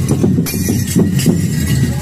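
Hachinohe enburi festival accompaniment: a dense, rapid run of drum and percussion strokes.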